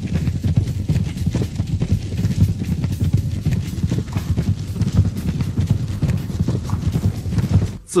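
Sound effect of a large body of cavalry galloping: a dense, continuous drumming of many hooves.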